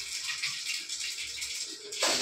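A dosa sizzling on a hot tawa over a gas burner: a steady hiss.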